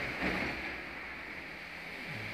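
Brief soft handling noise about a quarter second in as a smartphone battery is picked up by hand, over a steady background hiss.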